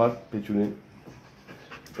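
A pet dog giving two short whines, one at the start and one about half a second later, each falling in pitch.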